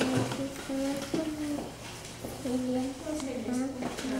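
A young child speaking very softly, too quietly to make out.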